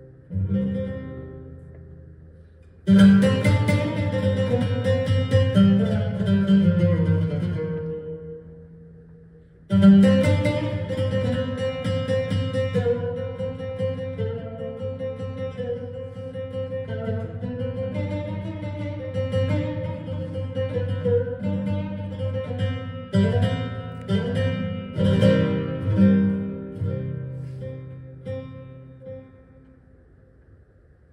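An oud played in free, unaccompanied-sounding phrases of plucked notes. A note rings away at the start, a new phrase begins about three seconds in and dies down, and a second long phrase begins about ten seconds in and fades out near the end.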